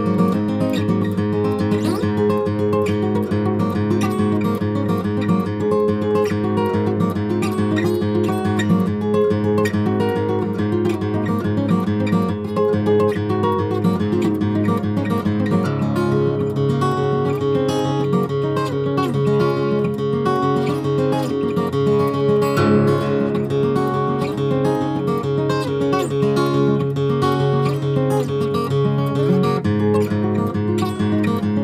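Steel-string acoustic guitar played fingerstyle in a quick instrumental piece: rapid picked notes over ringing bass notes. The bass line shifts about halfway through and again a few seconds later.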